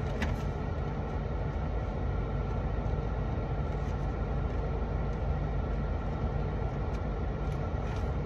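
Steady low hum and rush inside a parked car's cabin: the engine idling with the air conditioning blowing, and a few faint clicks.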